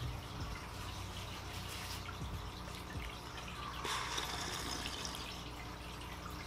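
A sip of coffee from a mug, a soft liquid sound about four seconds in, over a quiet room with a steady low hum.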